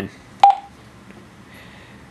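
Juentai JT-6188 mobile radio giving one short keypress beep about half a second in, as its menu steps from one item to the next.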